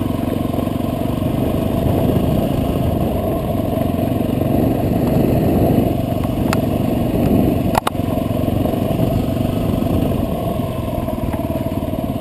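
Motorcycle engine running steadily as the bike is ridden slowly, with two sharp clicks about six and a half and eight seconds in. The clicks are likely part of an unexplained rattle that the rider cannot trace and doubts is coming from the bike.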